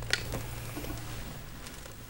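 A quiet pause before playing: a sharp click just after the start and faint rustles as the lute and guitar players settle their instruments, over a low hum.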